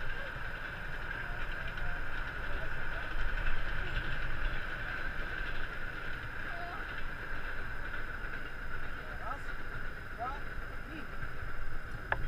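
Wind rumbling steadily on an action camera's microphone, with a faint steady high hum above it. A man's voice counts one word near the end.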